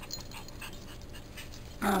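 Faint, soft rustles and sniffs from a small Pomeranian puppy nosing about in dry leaves and grass. A woman's voice begins just before the end.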